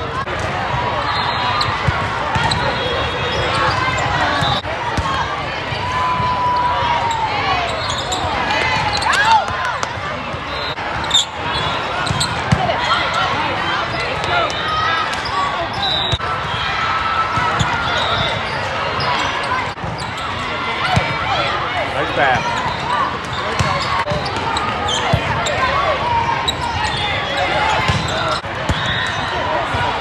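Volleyball hall din: many overlapping voices and calls from players and spectators, with the repeated thuds of volleyballs being hit and bouncing.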